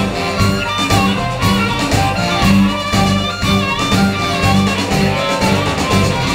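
A live blues-soul band with a horn section, electric guitars, keyboard and drums playing a song. A steady, repeating bass line pulses underneath.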